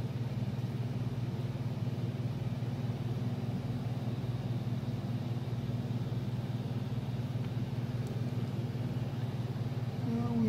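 Steady low background hum, like a motor or fan running, with no other distinct sound.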